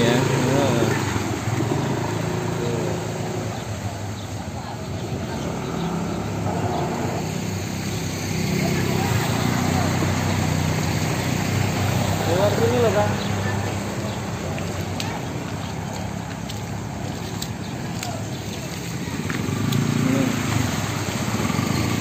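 Motor scooter engines running at low speed as scooters ride slowly through floodwater, getting louder as one passes, with people's voices in the background.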